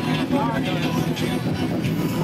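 Motorcycle engines running steadily under a crowd's conversation.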